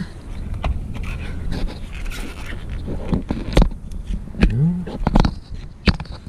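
Plastic wiring-harness connectors being handled and pushed onto a tractor's control module: scraping and rustling with several sharp clicks, a few in quick succession near the end, over a steady low hum.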